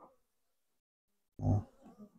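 A man's short, low grunt about one and a half seconds in, with silence around it.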